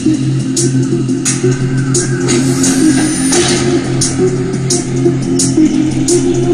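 Electronic dance music with a steady beat and bass line playing loud through a pair of Tronsmart Element Groove Bluetooth speakers linked in stereo, a sharp hit about every two-thirds of a second.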